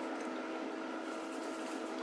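Steady, quiet room hum with a faint constant drone of a few steady tones and no speech: background appliance or room noise.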